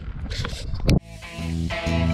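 Wind rumbling on the microphone with a few handling clicks for about a second, then a sudden cut to background music.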